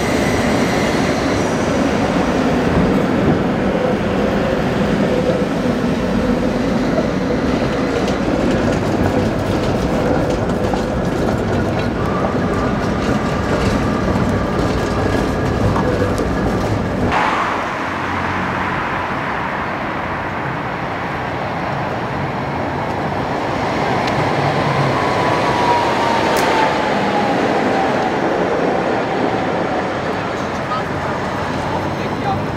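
Tatra T3-family trams running on street track: the steady rumble and rattle of wheels and traction equipment as a low-floor T3R.PLF tram pulls past. After an abrupt change it is quieter, and a thin high tone slowly falls in pitch near the end.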